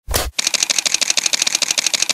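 Camera shutter sound effect: a single shutter click, then a rapid burst of shutter clicks of about a dozen a second, like a motor drive firing continuously.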